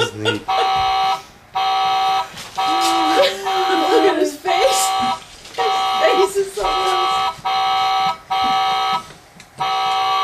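Toy car horn on a pedal car's steering wheel beeping over and over, one steady-pitched beep after another with short gaps, pressed repeatedly.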